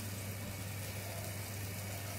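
Tomato and scampi sauce cooking in a stainless steel saucepan on a gas burner: a faint, steady sizzle with a low steady hum underneath.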